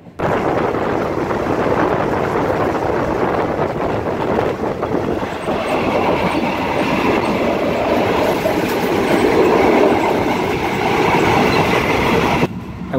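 Passenger train running along the rails, heard from inside a carriage: the steady noise of wheels on track with a dense rattle, with no let-up.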